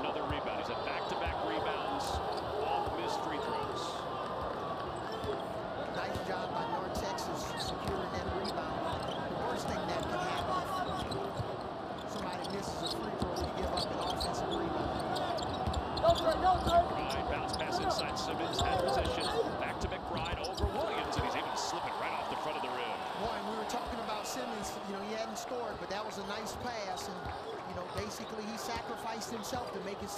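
A basketball being dribbled on a hardwood court, with players' voices calling out in a sparsely filled arena. Several sharper, louder hits come about sixteen seconds in.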